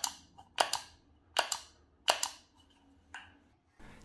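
A USB foot pedal's switch pressed by hand, sharp clicks about five times, several heard as a quick double click of press and release.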